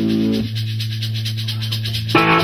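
Live rock-trio music: a held low electric bass and guitar note rings over the drummer's quick, steady cymbal ticking. About half a second in, the higher chord notes drop away, leaving just the low note and the ticking.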